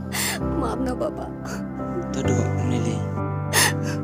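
Slow background music with sustained notes over a person sobbing, with sharp gasping breaths near the start and near the end.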